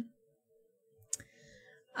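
Near silence broken by a single sharp click about a second in, followed by a faint, brief trailing sound.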